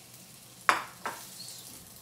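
Egg-and-flour-coated zucchini blossom frying in hot oil: a steady sizzle, with a loud sharp pop less than a second in and a smaller one shortly after.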